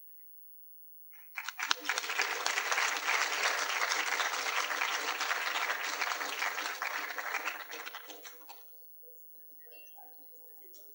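Audience applauding in a lecture hall. It starts about a second in, holds for around seven seconds and dies away near the end.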